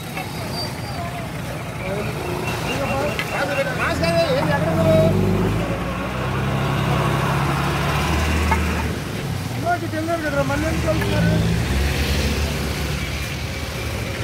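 Road traffic: a heavy lorry's engine runs close by, its low hum swelling from about four seconds in and fading after about nine, with motorbike and scooter engines around it.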